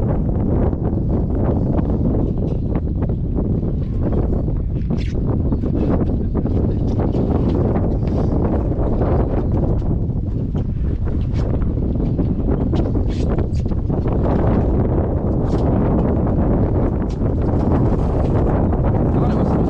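Steady wind buffeting the microphone, a loud low rumble, with scattered light clicks over it.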